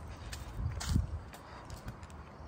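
Footsteps going down outdoor concrete stairs: a few soft steps, the clearest just before one second in, over a low steady rumble.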